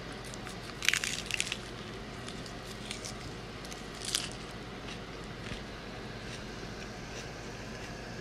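Crunchy bites and chewing of a fresh lettuce-leaf wrap close to the microphone: a cluster of crisp crunches about a second in, another about four seconds in, then quieter chewing.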